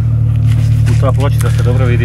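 An engine running steadily at idle, a low even hum that is the loudest sound throughout. A voice speaks over it in the second half.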